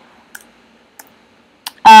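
Three faint, separate clicks of computer input, about two-thirds of a second apart, made while a text label is being edited. A woman's voice starts right at the end.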